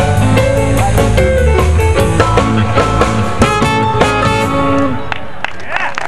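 Live blues band with electric guitar, bass, drums and horns playing the closing bars of a song, the music ending about five seconds in.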